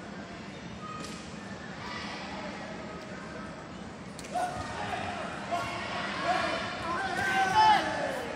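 Shouts from a kempo randori bout, echoing in a large hall: quiet hall ambience at first, then from about four seconds in sharp thuds of blows and high, rising-and-falling shouts that grow louder toward the end.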